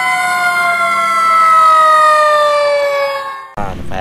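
Fire engine siren wailing, its pitch falling slowly and steadily for about three and a half seconds before cutting off abruptly.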